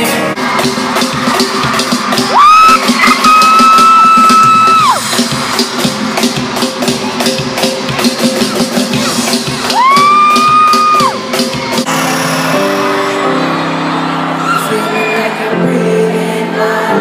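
Live pop concert music recorded from the crowd in an arena, with a steady drum beat. Two loud, high held voice notes cut across it, the first about two seconds in lasting nearly three seconds, the second about ten seconds in. About twelve seconds in the beat drops out, leaving sustained keyboard chords.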